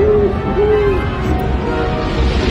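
An owl hooting twice, two short arched calls in quick succession, over loud orchestral music.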